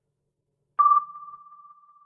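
A single ping sound effect, about a second in: one clear high tone that starts sharply and fades away over about a second and a half.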